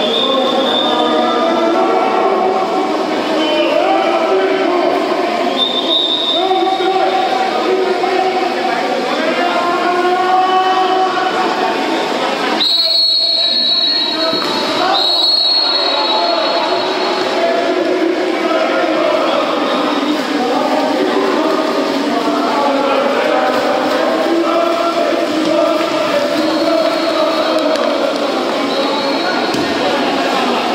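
Referee's whistle blowing several short, steady blasts over a constant din of many voices shouting and calling during a water polo match.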